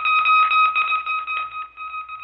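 A steady high-pitched tone with fast, regular clicking under it, used as a radio-drama bridge effect between news bulletins. It thins out near the end.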